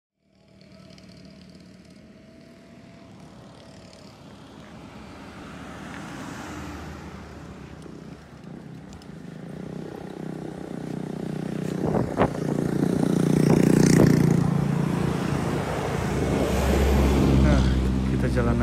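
Road traffic, growing steadily louder, with a motor vehicle engine, most likely a passing motorcycle, loudest about thirteen to fourteen seconds in. A single sharp knock comes about twelve seconds in.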